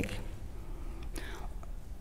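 Pause in a lecturer's speech picked up through her table microphone: a low hum and faint room hiss, with a faint breath about a second in.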